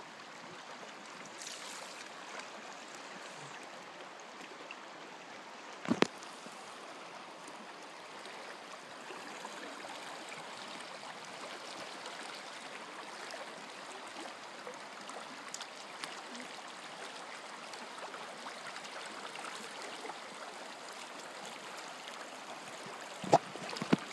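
River water flowing, a steady low rush. A sharp click about six seconds in and another near the end stand out above it.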